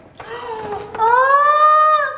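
A person's voice in a long, high-pitched drawn-out cry, getting louder about a second in and then held steady.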